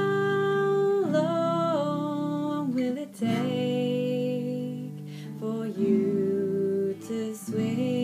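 A woman singing a slow song to her own acoustic guitar, holding long notes of a second or two each that step up and down in pitch.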